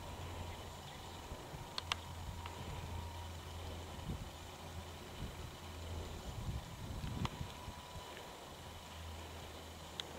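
Faint outdoor background: a steady low hum with a few sharp clicks, about two seconds in and again about seven seconds in.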